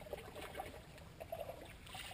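Faint water trickling and swishing as a paddle is worked through the water to scull a jon boat.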